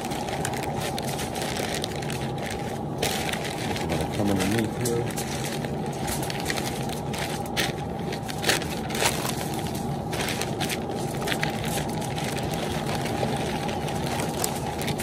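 Butcher paper crinkling and rustling as it is folded and pressed around a brisket, in irregular crackles over a steady low hum.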